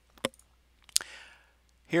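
Two computer mouse clicks, one about a quarter second in and a sharper one about a second in, as a software button is pressed. A man's voice starts near the end.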